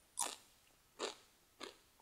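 A man's mouth noises while he pauses between sentences: three faint, short sounds, a breath and small lip or tongue clicks.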